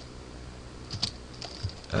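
A few faint keystrokes on a computer keyboard, about a second in and again near the end.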